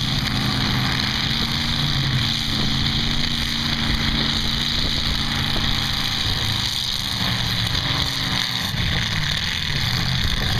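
Engines of several demolition derby cars running together, a steady low drone with the pitch shifting a little as the cars push and manoeuvre.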